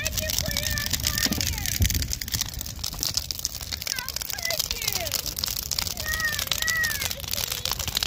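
A large bonfire of wooden crates and boards crackling and popping steadily, with high voices calling and squealing over it every second or two.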